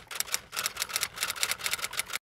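Typewriter keystroke sound effect: a rapid, even run of sharp clicks, about eight a second, as title text types on letter by letter.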